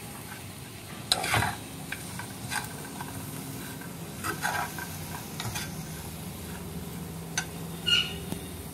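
A spatula stirring and scraping poha and chopped vegetables around a frying pan, in irregular strokes, over a faint sizzle of the hot pan.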